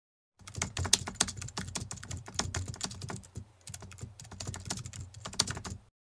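Rapid, irregular clicking of keys being typed on a keyboard, with a brief pause a little past halfway, cutting off abruptly just before the end.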